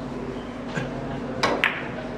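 Carom billiard shot: a light tap of the cue tip on the ball, then about halfway through two sharp, ringing clicks of ball striking ball, a fifth of a second apart.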